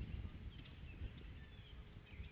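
Faint outdoor ambience: a few short, high bird chirps in the distance over a low, uneven rumble of wind on the microphone.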